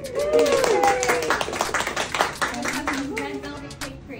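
A small group of people clapping, with voices cheering and calling out over the claps.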